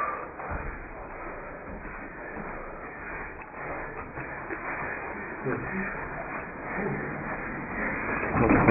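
Indistinct voices over a steady murmur of room noise.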